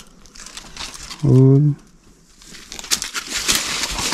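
Dry leaves and undergrowth rustling and crackling from about three seconds in, as a newborn calf is caught in the brush. Earlier comes a single short, steady-pitched call lasting about half a second.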